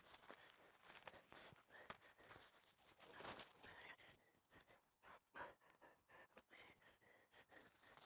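Near silence with faint rustling and light clicks of protective packaging wrap being pulled off a new bicycle's handlebars and frame.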